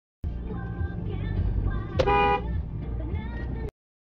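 A car horn sounds once, a short honk about two seconds in, over a low steady rumble of traffic; the sound cuts off abruptly near the end.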